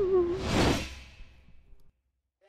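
Animated-intro sound effects: a wavering tone slides down and stops, then a whoosh swells and fades about half a second in.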